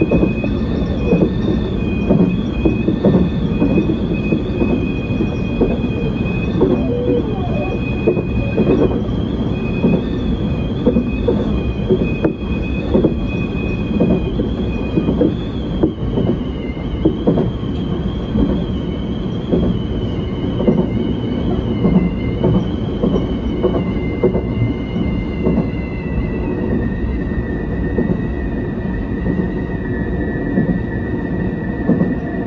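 Tobu 10050 series electric commuter train running along the line, heard from inside the cab: a steady rumble with irregular knocks from the wheels on the track and a high, wavering whine that sinks slightly in pitch near the end.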